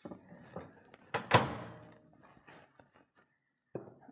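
Handling sounds as a bowl is taken out of a microwave: a few small knocks, then one loud thunk a little over a second in, followed by light taps.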